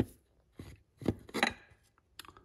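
A few short clicks and scrapes as the oil filter cap, with its filter element attached, is handled in a cup-type filter wrench and drawn up out of its housing. The loudest scrapes come a little past the middle.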